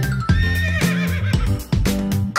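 A horse whinny sound effect over cheerful children's song backing music.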